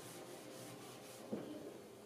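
Cloth chalkboard eraser wiping chalk off a board in quick, soft back-and-forth strokes, about four or five a second. The strokes stop a little after a second in, followed by a single light knock.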